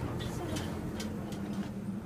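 Steady low hum of a Dover hydraulic elevator's machinery, with a few light clicks over it.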